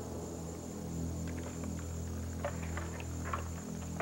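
Soft, sustained dramatic background music under a steady low hum.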